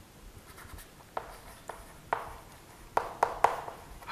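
Chalk writing on a blackboard: faint scratching with a series of sharp taps as the chalk strikes the board, starting about a second in.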